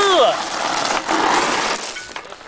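A short call by a voice that rises and falls right at the start, then mountain-bike tyres crunching over loose gravel as a rider passes close, loudest from about a second in and dropping away near the end.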